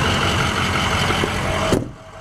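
The Ford 6.0-litre Power Stroke V8 turbo diesel idling: a steady running sound with a thin, constant tone over it. It cuts off abruptly near the end.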